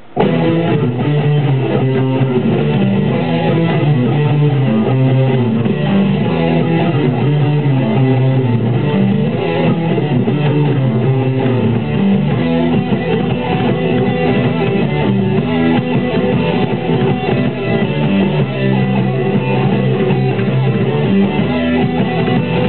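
Heavy metal song with electric guitars and a fast, driving electric bass line played fingerstyle with three plucking fingers, starting suddenly at full volume.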